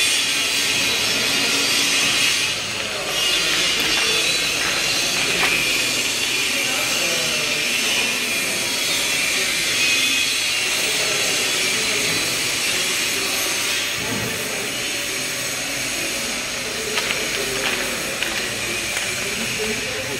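Steady, loud hiss of workshop background noise, with faint voices and a few light knocks.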